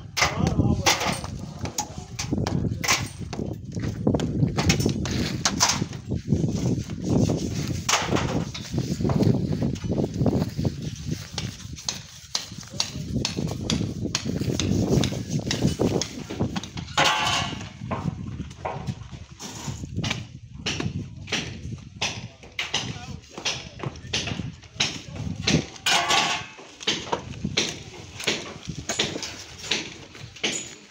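Hand plastering of a concrete block wall: irregular knocks and clacks of trowels and floats working cement render, with occasional longer scrapes.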